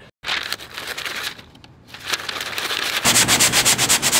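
Hands rubbing and scrubbing a leather jacket against a concrete floor to distress it. The leather makes a rough, rustling rub at first, then from about three seconds in a fast run of scrubbing strokes, about seven a second.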